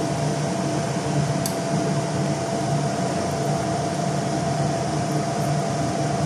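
Steady mechanical hum and whir of a running motor, with one constant thin whine over a low hum, and a single light tap about one and a half seconds in.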